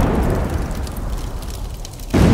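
Explosion-and-fire sound effect for a title card. The deep, noisy blast is already sounding and fades away steadily over about two seconds.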